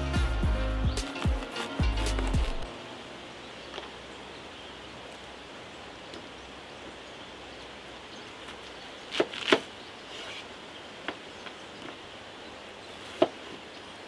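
A large handmade kitchen knife chops a bell pepper and a red onion on a wooden cutting board. The chops come as a few sharp, spaced-out knocks, the loudest pair about nine seconds in, over a faint steady hiss. Background music plays for the first couple of seconds and then stops.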